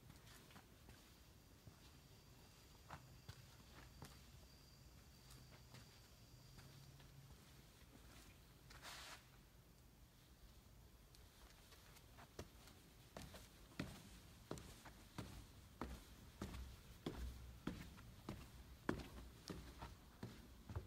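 Near silence with a faint low hum for the first half, a brief soft rustle about nine seconds in, then footsteps, soft knocks coming one or two a second from about twelve seconds on.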